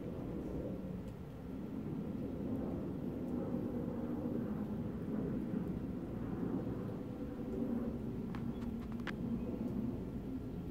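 Steady low outdoor rumble of distant engine noise, with a few faint clicks near the end.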